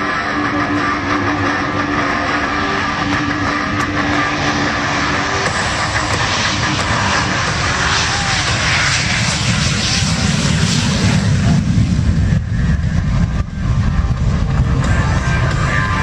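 Navy F/A-18 Hornet's twin jet engines at takeoff power as the fighter rolls down the runway and lifts off. A loud, steady jet roar that builds into a deep rumble about nine to twelve seconds in, then eases slightly.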